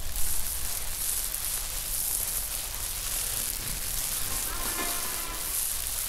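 Steady rain falling on a truck's roof and windshield, heard from inside the cab as an even hiss.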